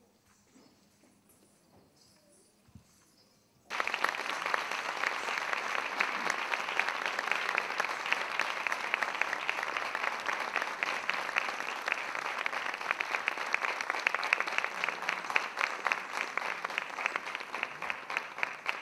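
Near silence for the first few seconds, then audience applause starts abruptly about four seconds in and carries on steadily: a dense crackle of many hands clapping.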